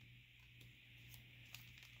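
Near silence: room tone with a faint steady low hum and a few soft, faint clicks.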